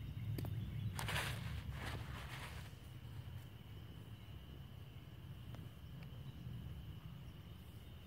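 Faint outdoor ambience with a constant low rumble, a brief rustling hiss about a second in, then a faint steady high-pitched chorus from about three seconds in.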